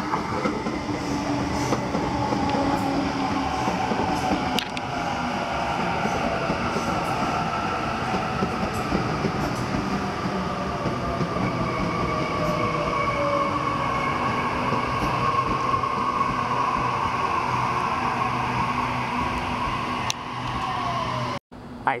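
Waratah double-deck electric train running into the platform with steady wheel and rail noise. Its motor whine falls in pitch as it slows. The sound cuts off abruptly just before the end.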